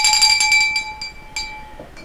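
Small handbell shaken rapidly, its clapper striking many times a second. The ringing fades about a second in, with one last strike shortly after, and dies away before speech resumes.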